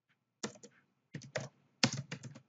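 Computer keyboard being typed on: short key clicks in quick little clusters, about half a second in, just after a second, and again near the end.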